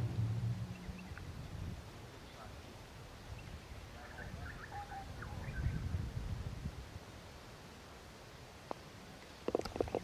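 Low wind rumble on the microphone, with a single light click near the end: the putter striking the golf ball on a short putt.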